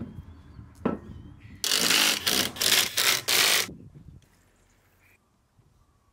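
A single metallic knock, then four short rasping strokes of a ratchet socket wrench doing up the wheel nuts on a van's rear wheel.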